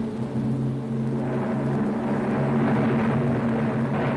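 A steady low drone held on a couple of low pitches, growing fuller and brighter about a second in.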